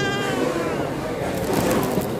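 A high-pitched voice squeal cutting off right at the start, then a steady hubbub of indistinct voices in a restaurant room.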